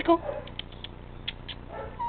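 A short spoken call of "¡Chico!" right at the start, then a quiet stretch with a few faint, brief clicks.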